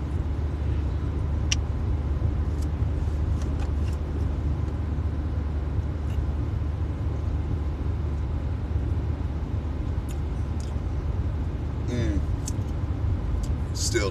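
Steady low rumble of a car's engine and tyres at road speed, heard from inside the cabin, with a short voiced sound near the end.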